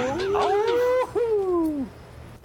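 A long, drawn-out howling wail that rises in pitch, holds, then slides down and fades near the end.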